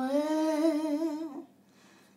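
A woman humming the melody of a traditional Galician song unaccompanied: one held note that steps slightly up with a light vibrato, then breaks off about a second and a half in.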